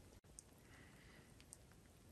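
Near silence: faint background hiss with a couple of tiny ticks.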